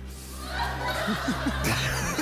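Studio audience laughing and chuckling, getting louder from about midway.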